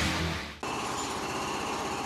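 The end of a heavy metal guitar track fades out in the first half second, then a steady mechanical rattling of background renovation work with power tools starts and runs on.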